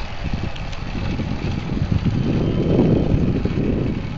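Steady low rumble of a moving vehicle's engine and tyres on a paved road, recorded from on board, swelling a little about three seconds in.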